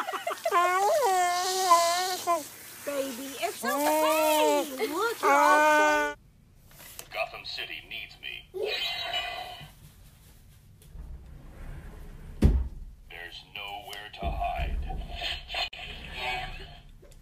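A dog crying while being showered in its bath: long wavering cries that rise and fall in pitch, lasting about six seconds and then stopping abruptly. Quieter sounds follow, with a toy's voice and a single sharp knock about twelve seconds in.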